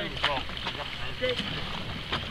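A coxless four rowing: a few sharp knocks and splashes from the sweep oars in their gates and the water, over wind on the microphone.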